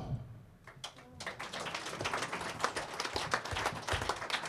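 Audience applause: after a brief hush, many hands start clapping about a second in and keep up a dense, even clapping.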